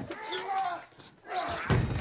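Film fight-scene sound: a man's strained grunting, then a sudden heavy impact of a blow about a second and a half in.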